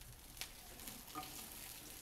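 Egg-battered dried fish frying in a little oil in a skillet: a faint, steady sizzle, with one sharp click about half a second in.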